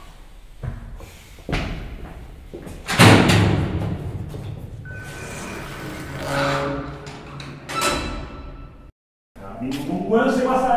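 A heavy door slams shut about three seconds in and rings on as it dies away, with lighter knocks before it; music with a few held tones follows, and the sound drops out completely for a moment near the end.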